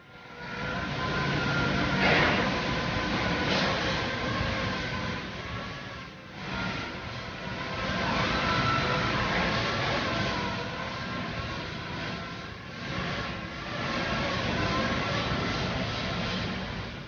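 NTC five-axis 3D laser cutting machine running, a steady hiss with several thin whining tones that waver slightly. It dips briefly about six seconds in.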